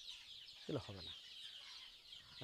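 A shed full of young deshi chickens cheeping and clucking: a steady, high, many-voiced chatter. One short, low vocal sound with a falling pitch comes about three-quarters of a second in.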